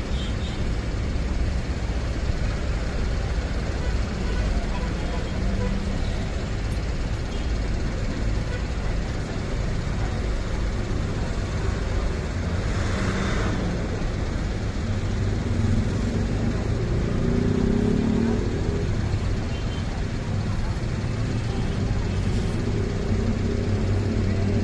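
Diesel engines of large intercity coaches running at low revs as a coach manoeuvres slowly, a steady deep rumble with background chatter of people. A short hiss about halfway through.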